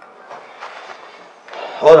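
Quiet room tone with faint rustling of clothes and sofa upholstery as a man sits down. A man's voice says one word near the end.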